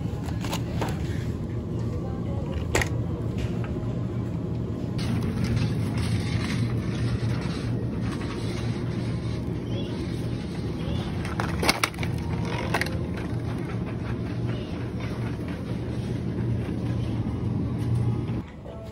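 Supermarket ambience with music: a steady low hum and background noise, with a few sharp clicks of plastic produce packaging and a shopping basket being handled.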